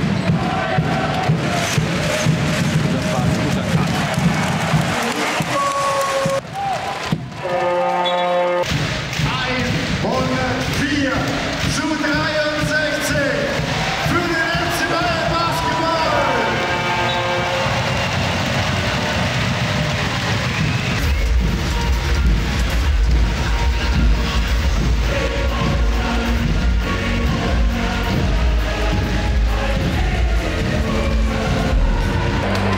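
Background music with a heavy bass beat. The beat falls away after about five seconds, leaving voices and arena crowd sound, and returns about twenty seconds in.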